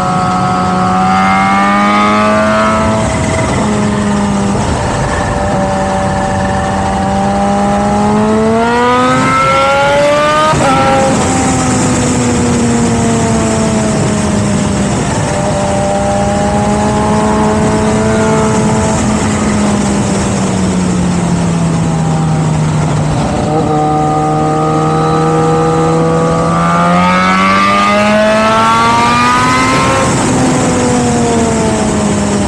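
Motorcycle engine under way, its revs rising and falling as the rider opens and closes the throttle, with steep climbs in pitch that break off sharply at gear changes, about ten seconds in and again later. Steady wind and road noise runs underneath.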